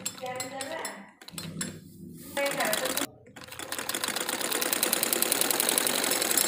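Domestic sewing machine starting up about three seconds in and running steadily with a fast, even patter of needle strokes, sewing a topstitch through the layered fabric of a salwar waistband.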